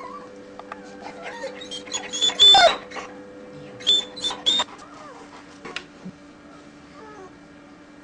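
Newborn German Shepherd puppies squealing in short, high-pitched cries, a loud burst about two and a half seconds in and another cluster about four seconds in, then only faint squeaks.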